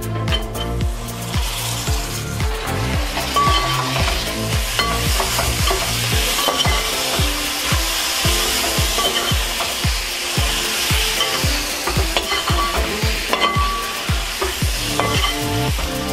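A metal spatula stirring and scraping onions, curry leaves and freshly added chopped tomatoes in a large metal pot, with the masala sizzling as it fries.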